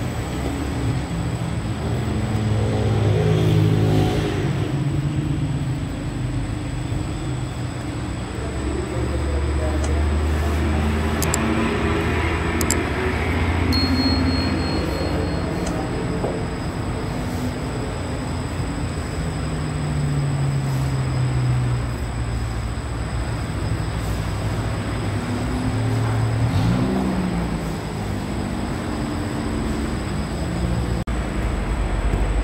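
Steady low mechanical rumble of bakery machinery, with indistinct voices mixed in and a few faint clicks.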